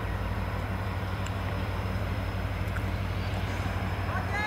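Diesel engine of V/Line A-class locomotive A66 running with a steady low rumble as it moves slowly out of the yard at the head of its carriages.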